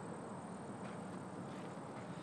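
Faint, steady outdoor background noise with a thin, high, steady tone running through it; no distinct event.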